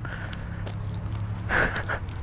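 Steady low rumble and rustling on a chest-mounted GoPro's microphone, with a louder brushing noise about one and a half seconds in.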